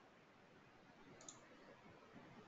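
Near silence, with a single faint computer mouse click a little over a second in, picking an item from a drop-down menu.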